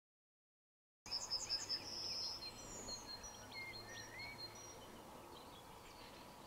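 Silence for the first second, then quiet outdoor ambience with songbirds singing: a quick run of high notes at first, then scattered chirps and a couple of lower whistled phrases.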